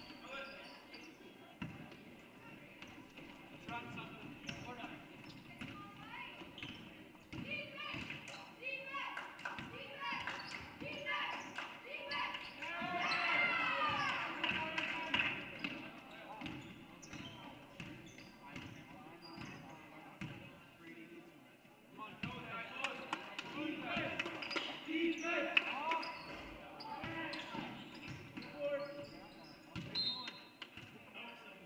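Basketball being dribbled on a hardwood gym floor, with repeated bounces, sneakers squeaking about halfway through, and players and spectators calling out in a large echoing gym.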